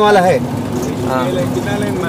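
A vehicle's engine running steadily while driving, a low even hum under the voices.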